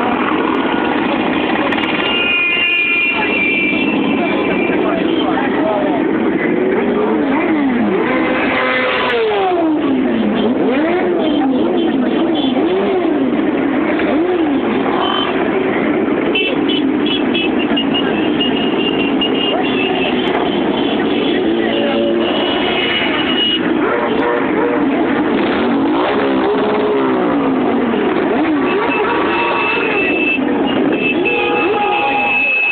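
A column of motorcycles riding past one after another, their engines revving in repeated rising and falling swoops over a steady mass of engine noise.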